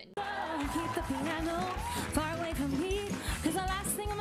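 A woman singing a pop-style song with vibrato over live band accompaniment with a steady beat. The music cuts in suddenly just after the start.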